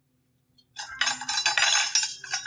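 Plastic packaging crinkling and rattling as small tomatoes are tipped out onto a wooden cutting board, starting abruptly a little under a second in and continuing as a loud, dense crackle.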